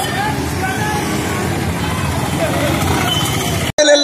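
Busy street noise: passing scooters and motorbikes with scattered voices of people around. The sound drops out abruptly just before the end.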